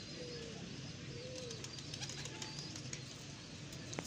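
Domestic pigeons cooing faintly: two soft rising-and-falling coos within the first second and a half, over a low steady background hum.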